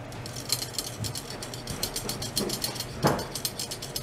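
A rapid, irregular run of small mechanical clicks and ticks, with a louder knock about a second in and another just after three seconds, over a steady low hum.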